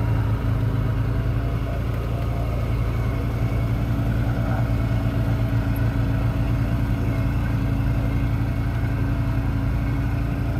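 Engine of a side-by-side utility vehicle running at a steady cruising speed while it drives over grass, a constant low drone with no change in pitch.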